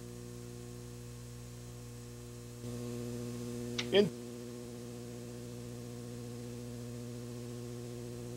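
Steady electrical hum with a buzz of evenly spaced overtones, slightly louder from about a third of the way in. A brief voice-like sound cuts in once about halfway through.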